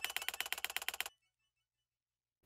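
End of an intro music cue: a fast, even run of light percussive ticks, about ten a second, that stops suddenly about a second in and leaves silence.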